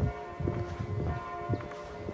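Church bells ringing at noon, their tones overlapping in a steady ring. Irregular low thumps sound close to the microphone, loudest just at the start.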